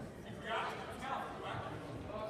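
Indistinct voices talking in a gymnasium, with no words clear enough to make out.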